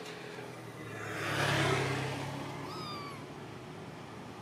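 A vehicle passes: a rush that swells and fades over a low engine hum. Just after it comes a short mewing call that falls in pitch, from an animal, likely one of the monkeys.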